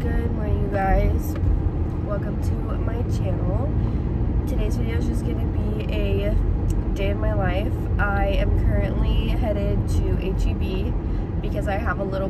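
A woman talking inside a moving car, over steady low road and engine noise in the cabin.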